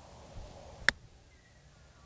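Lob wedge striking a golf ball on a short chip shot off fairway grass: one sharp click about a second in.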